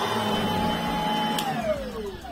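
Truvox Valet Battery Upright II cordless vacuum's motor running with a steady whine while its brush roll stays still, because the drive belt has snapped. About one and a half seconds in there is a click, and the whine falls in pitch as the motor winds down.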